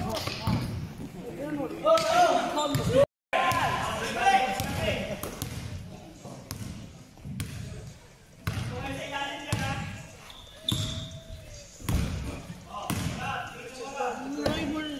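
A basketball bouncing on a hard indoor gym court during a game, with players' and spectators' voices throughout. The sound drops out completely for a moment about three seconds in.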